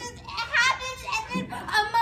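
A young girl's high-pitched voice in several short vocal outbursts, without clear words.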